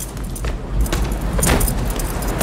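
Violent thunderstorm on a boat: a heavy, steady rumble of wind and water with rain and spray lashing, broken by a few sharp clattering knocks.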